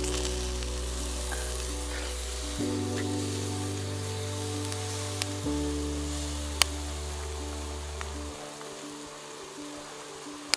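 Steak sizzling on a metal grill grate over a campfire, a steady crackling sizzle with a sharp metallic click of the utensil on the grate about six and a half seconds in. Under it, slow background music of held chords that change every few seconds.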